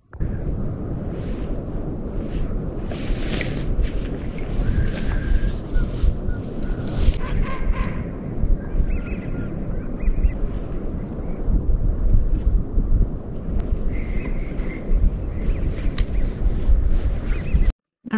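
Wind buffeting the microphone: a heavy, gusting rumble that rises and falls unevenly, cutting off abruptly just before the end.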